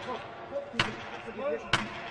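Two sharp knocks about a second apart, with voices in between.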